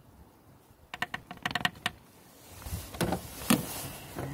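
A quick run of light plastic clicks and taps, then handling noise with two sharper knocks near the end, as a plastic funnel is worked out of a power steering fluid reservoir's filler neck.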